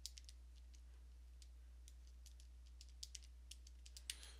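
Faint, irregular clicks of a computer keyboard and mouse, about a dozen short taps spread through a near-silent stretch.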